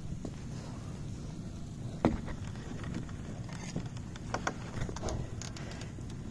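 Handling and movement noise on a phone microphone: a steady low rumble with a few scattered light clicks and taps, the sharpest about two seconds in.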